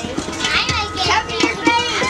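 Young children's high-pitched voices, chattering and calling out as they play.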